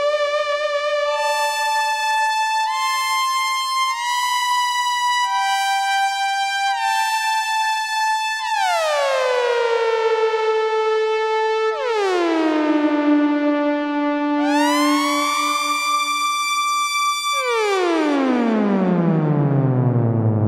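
Novation Summit polyphonic synthesizer playing sustained chords. For the first eight seconds the chords step to a new pitch every second or so. After that they slide between notes: two steep downward glides that settle, one upward sweep, and near the end a long dive down into the bass.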